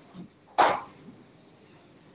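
A single cough about half a second in, preceded by a fainter short sound.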